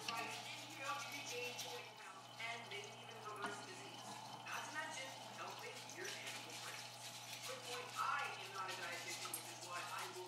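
Water dripping and splashing as a mesh strainer scoops duckweed out of a grow tank, over a steady low hum, with faint voices in the background.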